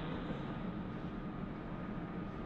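Steady, even hiss and low rumble of a narrow-band audio feed, with no distinct event in it.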